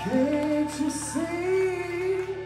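Live rock band playing, with a voice singing drawn-out notes over the band. The sung line comes in at the start and rises into each held note.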